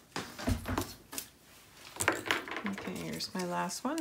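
Folded cardstock being picked up and laid onto a paper mini album on a cutting mat. A dull thump comes about half a second in, with paper clicks, then sliding and rustling of paper from about two seconds.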